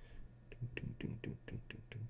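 A run of faint, light clicks, about six or seven a second, over a low steady hum.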